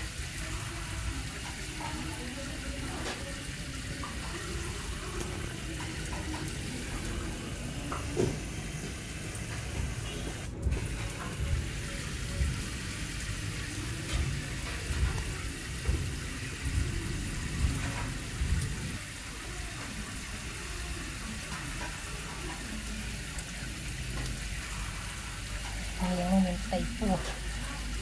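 Cats eating rice and fish from a ceramic plate, with short clicks and chomps that cluster in the middle, over a steady hiss.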